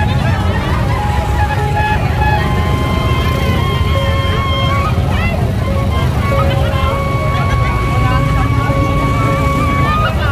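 Loud music played through a street sound-system speaker stack. It has heavy bass and a melody of long held notes that bend slightly, over the noise of a dense crowd.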